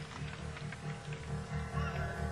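Live country band playing softly: an evenly pulsing low bass note under held, sustained tones.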